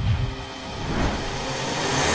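Electronic logo sting: a low hit, then a whoosh that swells steadily louder over a held synth chord, building toward the logo reveal.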